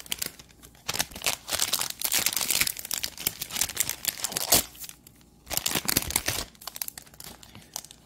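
Plastic trading-card cello-pack wrapper being crinkled and crumpled by hand, in rustling bursts with a short pause about five seconds in.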